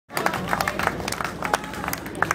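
Audience clapping and applauding in irregular, scattered claps over a low steady hum.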